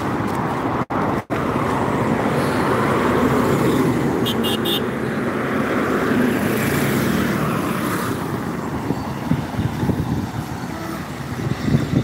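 Roadside highway traffic noise with wind on the microphone. A car passes close about six seconds in, and three short high beeps sound about four and a half seconds in. The sound drops out briefly twice near the start.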